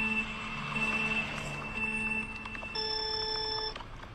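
Steady electronic tones, several held pitches at once over a light hiss, switching to a different set of tones about three quarters of the way through and stopping just before the end.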